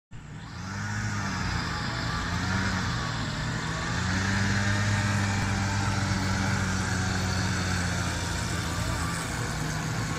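A steady low motor drone, its pitch wavering slightly in the first few seconds and then holding even.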